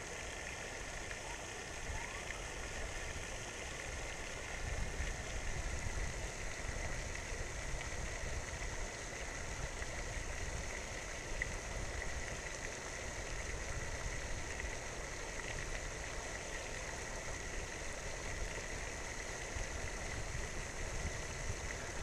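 Steady splashing of a pond's spray fountain, with a low rumble underneath that grows a few seconds in.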